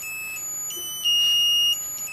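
Piezo element in a Znatok snap-circuit kit, driven by a music chip, playing an electronic tune: a string of shrill, steady beeping notes that change pitch every few tenths of a second, the loudest note held for over half a second in the middle.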